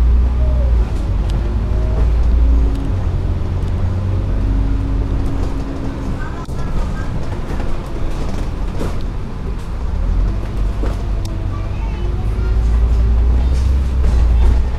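Double-decker bus engine and road noise heard from inside the bus while it drives: a heavy low rumble that eases in the middle and builds again near the end.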